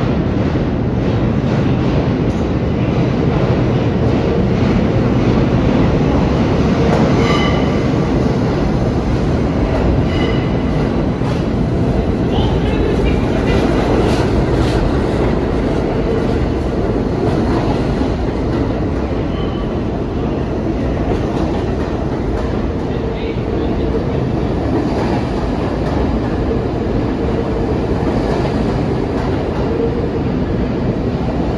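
R32 subway train pulling into an underground station, its steel wheels rumbling and clattering along the rails in a steady loud din as it runs along the platform. A few brief high squeals come in the first half.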